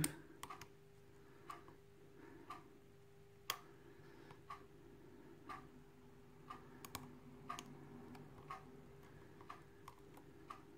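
Faint small metallic clicks of a lock pick working the pins of an ISEO euro cylinder held under a tension wrench, the sound of pins being lifted and set. A soft tick recurs about once a second over a steady low hum.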